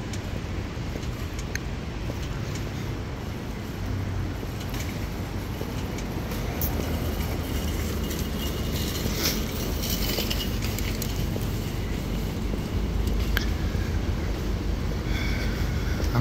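City street noise heard while walking along a sidewalk: a steady low rumble of traffic, with a few light clicks scattered through it.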